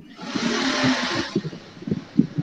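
A rushing hiss of noise through a participant's open microphone on a video call. It is loudest for the first second, then falls back, with low muffled sounds underneath.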